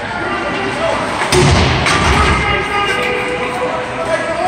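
A sharp bang on the ice rink's boards during play, with a low boom ringing on for about a second, then a lighter knock just after. Spectators' voices carry on underneath.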